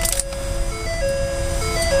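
A short electronic melody of plain beeping tones stepping up and down between a few pitches, from the 2012 Ford F-250 Super Duty's cab electronics as the truck is started, over a steady low rumble.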